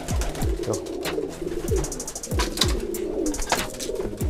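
Domestic pigeons cooing in a loft, with a flutter of wings and scattered light clicks and knocks.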